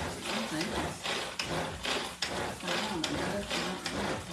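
Hand-pulled string food chopper blending tomatoes and salsa: the cord is yanked again and again, each pull spinning the blades inside the plastic jar in a quick whir, about two pulls a second.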